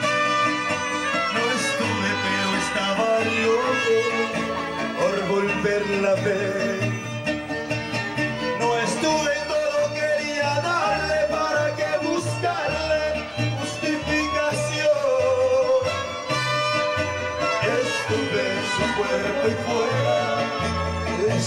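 Live Latin American band music with singing over a bass line that steps from note to note.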